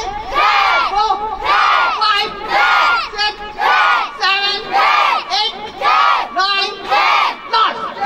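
A group of children in a karate demonstration shouting in unison, one loud shout roughly every second, in time with their kata moves.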